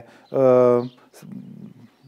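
A man's drawn-out hesitation sound, a level "ehhh" held for about half a second, followed by a faint low murmur.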